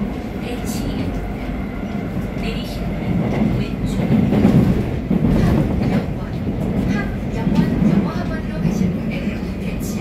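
Seoul Metro Line 3 subway train running, heard from inside the car: a steady rumble of wheels on rail and running gear, growing louder for a few seconds around the middle.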